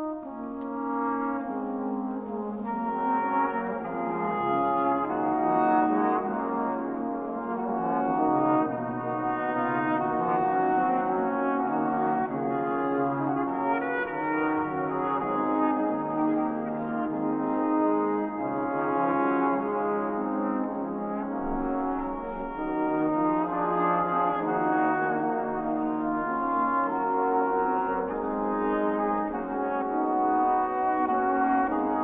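An early-music ensemble playing slow Reformation-era polyphony, several sustained wind lines overlapping in a brass-like tone. It swells louder over the first few seconds.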